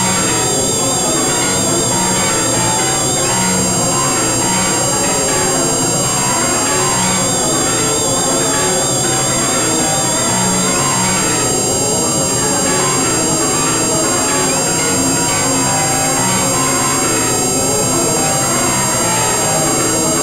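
Experimental electronic synthesizer music: a dense, steady drone texture of many shifting, overlapping tones, with thin, unchanging high-pitched whines above it and a warbling high tone that fades in and out several times.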